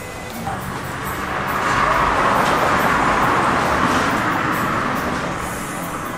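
A road vehicle passing close by: its noise swells over a couple of seconds and then fades, over steady background music.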